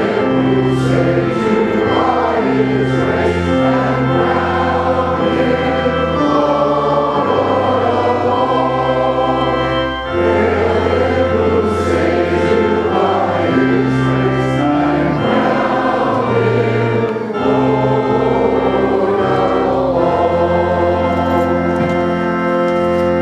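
Many voices singing a hymn together over held organ chords, with short breaks between phrases about ten and seventeen seconds in.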